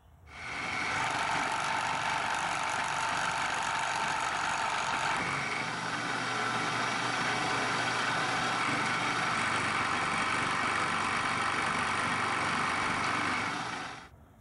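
Milling machine running, its end mill cutting into a padlock body: a steady machining noise that fades in at the start and fades out near the end.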